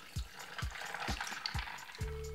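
Carrot juice poured in a thin stream into a glass over ice cubes, a steady splashing hiss as the juice runs onto the ice and fills the glass.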